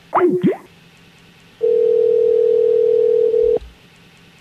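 Telephone ringback tone: one steady ring about two seconds long, starting about one and a half seconds in and cutting off cleanly, the sign that the dialled line is ringing at the other end. Just before it, right at the start, comes a brief burst of sliding, warbling tones.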